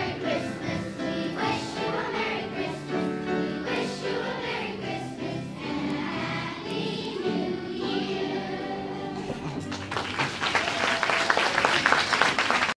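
Children's choir singing, with applause breaking out about ten seconds in.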